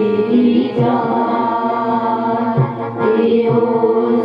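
Women and girls singing a devotional song together into microphones, the melody held in long notes, with short low drum beats underneath.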